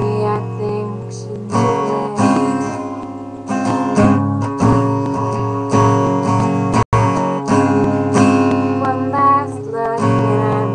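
Acoustic guitar strumming chords in an instrumental break of a song, with no voice. The sound cuts out completely for an instant about seven seconds in.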